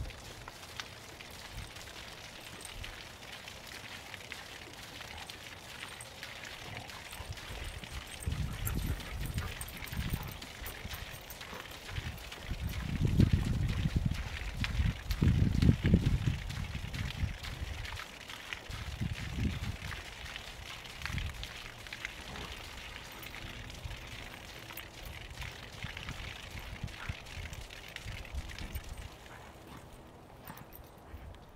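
Water draining in a thin stream from a water-filled umbrella base weight and splattering on the ground below, a steady patter. Bursts of low rumble come and go over it, loudest around the middle.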